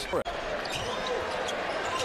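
Basketball arena ambience during live play: a steady crowd murmur with faint court sounds, broken by a momentary dropout about a quarter second in.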